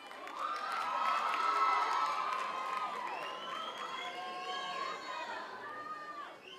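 Audience cheering and screaming, many high-pitched voices overlapping. It swells in the first couple of seconds and then gradually eases off.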